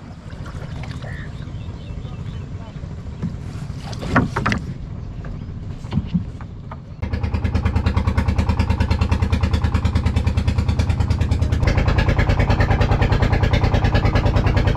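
A wooden fishing boat's inboard engine running. For the first few seconds there is a quieter hum with a few knocks around four seconds in. From about seven seconds in the engine is loud and steady, with a rapid, even beat.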